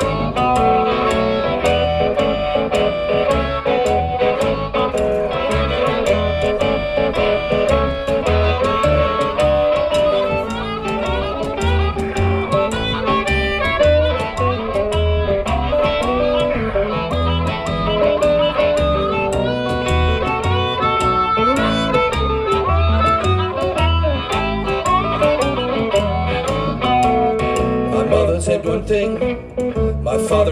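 Live blues instrumental break: a harmonica played into a microphone, wailing over electric guitar and plucked upright bass that keeps a steady beat.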